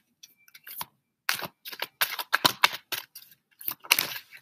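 A tarot deck being shuffled by hand: a quick run of about ten sharp card clicks and slaps.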